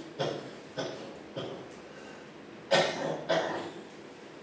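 A man coughing in a short fit of about five coughs, the last two, near the end, the loudest.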